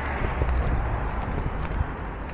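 Street ambience with wind rumbling on the microphone over traffic noise from a city avenue, with a few faint ticks.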